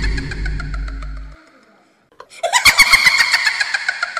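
Edited outro sound effects: a rattling, buzzing burst with ringing tones dies away about a second in. After a short silence a second rattling burst begins.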